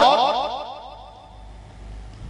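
The echo tail of a man's voice through a PA system with a heavy echo effect: his last word repeats and dies away over about a second and a half with a swept, sliding sound, leaving a low hum.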